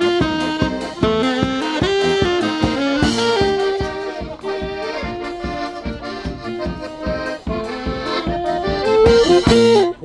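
Folk wedding band playing an instrumental passage: accordion and saxophone carry the melody over tuba and drum on a quick, steady beat. The music breaks off sharply at the end.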